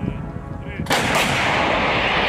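A towed howitzer fires one round about a second in: a sudden loud blast, then its rumbling echo rolls on.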